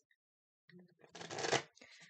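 A deck of oracle cards being shuffled and handled: a rustling burst of about a second, starting a little before halfway.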